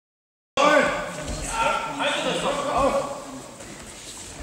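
Dead silence for about half a second, then voices shouting start abruptly, loudest at first and fading toward the end.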